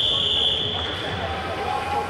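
Referee's whistle: one long, steady blast that fades out about halfway through, halting the action in a wrestling bout, over the murmur of voices in the hall.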